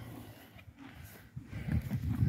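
A young horse rolling on its side in the dirt: faint low rubbing and thuds that grow louder near the end.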